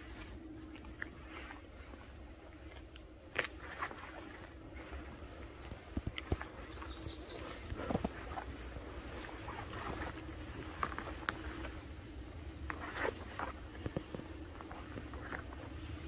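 Quiet forest ambience: scattered small clicks and rustles of handling and movement over a low wind rumble and a faint steady hum, with a brief high chirp about seven seconds in. No gunshot.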